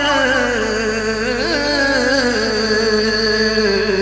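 A man singing a naat (Urdu devotional poem), holding one long drawn-out line whose pitch wavers and slowly sinks.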